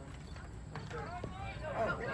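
Sideline spectators' voices with an exclamation of "oh" as a football play gets under way, two short sharp knocks about midway, and the voices starting to rise into shouting near the end.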